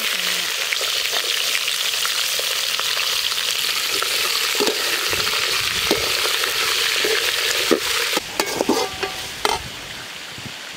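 Sliced ivy gourd sizzling in a hot aluminium pan, frying steadily from the moment it hits the pan. In the second half a perforated metal skimmer stirs it, scraping and knocking against the pan several times while the sizzle eases a little.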